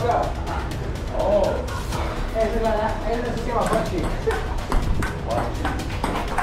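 Table tennis rally: the celluloid ball clicks sharply off paddles and the table, the hits coming closer together in the second half. Background music and voices run underneath.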